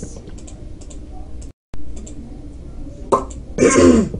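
Faint scattered clicks over a low steady hum, with a brief total dropout of the sound about a second and a half in. Near the end, a sharp click and then a short, loud cough.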